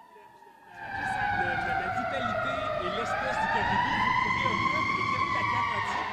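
Emergency-vehicle siren in a slow wail, starting about a second in, falling in pitch and then rising again, with a low rumble underneath.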